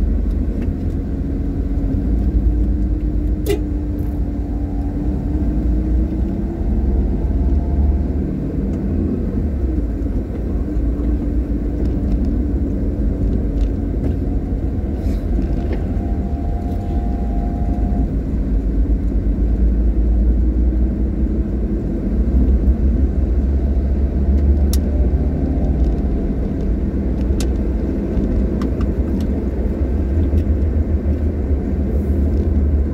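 A car driving along a road: a steady low rumble of engine and tyres, with the engine note rising and falling gently as the speed changes. A few faint clicks are heard.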